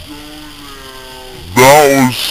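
A person's voice calling out in a long whoop that rises and falls in pitch about one and a half seconds in, after a softer held vocal note.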